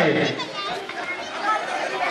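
Babble of many children and onlookers chattering, after a man's loud shouted game call of 'karai' ('bank') dies away in the first moment.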